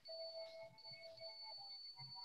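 Near silence on a video-call audio line: a faint, steady high-pitched electronic whine, with faint shifting tones beneath it.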